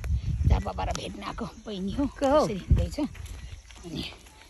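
People talking, with low rumbles of wind or handling on the phone's microphone.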